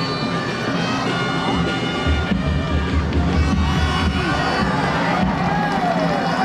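Music with sustained droning notes and a low bass that swells in the middle, over crowd noise.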